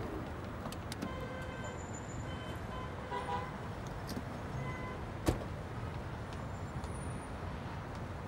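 Steady street ambience with traffic noise, with faint short high chirps in the first few seconds and a single sharp click about five seconds in.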